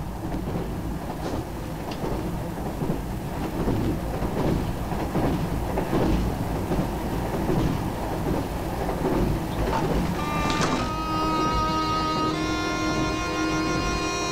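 Steady rumble and rattle of a moving passenger train, heard from inside the compartment, with a few faint knocks. About ten seconds in, music with long held notes comes in over it.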